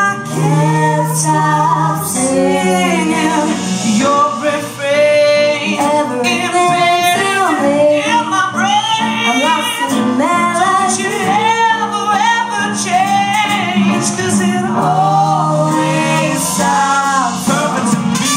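A woman singing lead vocals in a live pop/soul song, backed by a band with keyboard, drums and electric guitar, her melody sliding and bending over sustained low notes.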